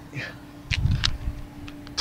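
Small handling sounds: a few short sharp clicks and a brief low rumble about halfway through, over a faint steady low hum.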